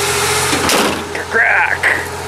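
Old Ford's engine idling steadily, just started and left to run. A brief higher-pitched sound comes in about a second and a half in.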